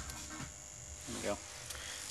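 Faint, steady high-pitched whine from a PWM-driven spindle motor and its IGBT drive circuit, over a low mains hum. A lower steady tone stops shortly after the start.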